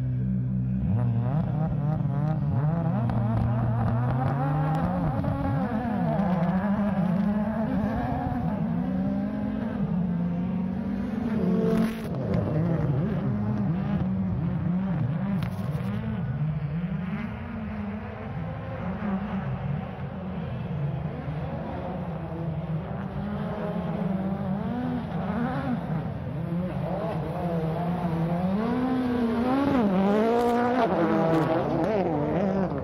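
Rally car engine at high revs, its pitch rising and dropping over and over as the car accelerates and shifts through the gears, with a sharp crack about twelve seconds in.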